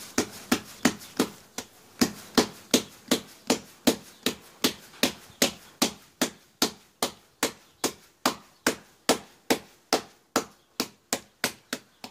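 Hands slapping bread dough flat on a floured tabletop, a steady run of sharp slaps about three a second as the dough ball is beaten out into a thin round.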